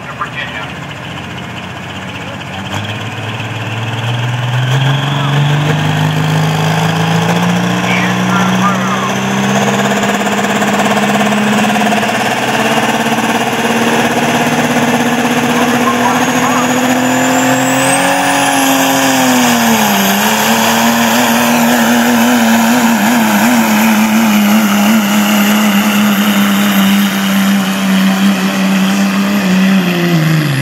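Turbocharged diesel pickup engine pulling a sled at full throttle: its pitch climbs slowly for about fifteen seconds, with a high turbo whistle rising alongside, dips briefly about twenty seconds in, then holds high and steady.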